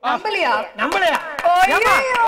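Excited voices exclaiming and laughing, with a few sharp claps in the second half.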